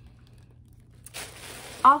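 Quiet for about a second, then a brief soft rustle of handling as the phone is moved. A woman starts speaking right at the end.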